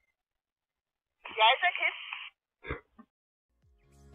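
A short spoken phrase of about a second, thin and narrow as through a two-way radio or telephone, with dead silence around it.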